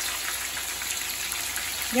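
Crocodile meat fillets frying in hot oil in a frying pan: a steady sizzle with faint crackles.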